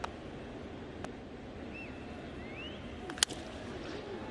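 Quiet ballpark ambience of a small, sparse crowd with a faint whistle. About three seconds in comes a single sharp crack of a bat meeting the pitch as the batter swings at the first pitch and fouls it off.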